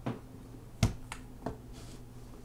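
Four short, sharp clicks or taps from handling things on a desk, the loudest about a second in, over a low steady hum.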